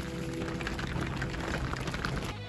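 Hooves of a herd of American bison clattering on an asphalt road as the herd moves past, a dense, irregular patter of clicks.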